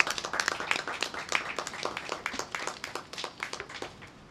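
A small group of people applauding, hand claps in a dense irregular patter that thins out and stops near the end.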